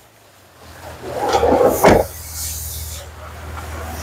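Honda N-Van side doors being shut: a short rumble of the door moving, with two clunks of the latch about a second and a half in, then a faint hiss.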